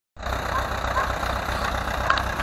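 Ursus C-360 tractor's four-cylinder diesel engine running steadily at low revs with an even low throb, cutting in abruptly just after the start.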